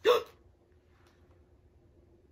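A woman's short, sharp vocal exclamation, falling in pitch and lasting about a third of a second, right at the start, followed by quiet room tone with a faint steady hum.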